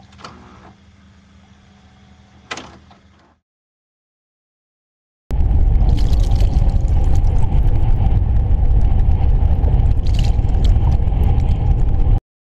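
A faint hiss with a single knock in the first few seconds, then after a short silence a loud underwater rush of water and bubbles starts abruptly, a deep rumble with crackling bubbles on top, as a submersible goes under.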